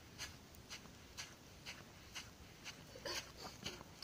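Faint footsteps at a steady walking pace, about two a second, each a short scuff, with louder scuffing near the end.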